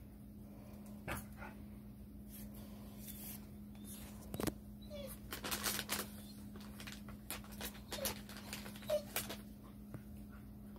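A cat in a harness moving about on a hard floor after a thrown treat: scattered light taps and rustles, with a sharper knock near the middle and two brief faint squeaky cat sounds, over a steady low hum.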